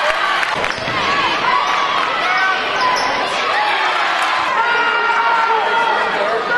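A basketball bouncing on a gym court during live play, with a few sharp knocks, under the steady hubbub of many voices from players and crowd.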